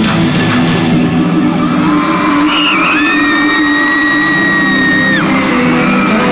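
Loud live pop concert music in an arena, recorded from the crowd. A high, held scream rises over it from about three seconds in and stops abruptly about two seconds later.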